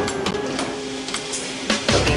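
Music with steady held notes and a few light, sharp percussive clicks.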